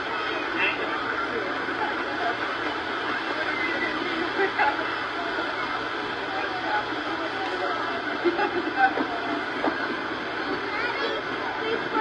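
Indistinct chatter of many people on a busy beach over a steady noise bed, with a few louder voices standing out briefly about two-thirds of the way in.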